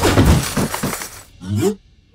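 A loud cartoon crash sound effect of breaking and clattering, followed by a few smaller knocks over the next second as a flung armchair tumbles. A short rising sound comes near the end.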